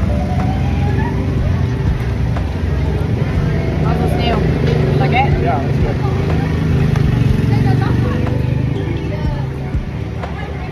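Steady low engine rumble of street traffic, with people talking in the background.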